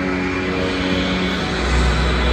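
Show soundtrack over loudspeakers: a noisy rumbling sound effect builds over held musical tones, and a deep bass rumble sets in near the end.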